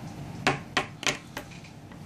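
A crayon tapping on a wooden tabletop: about five quick, sharp taps within a second.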